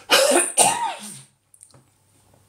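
A man coughing twice in quick succession, then going quiet.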